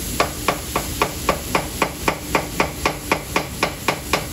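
Two metal spatulas chopping food on a steel flat-top griddle: rapid, evenly spaced metal clacks, about four a second.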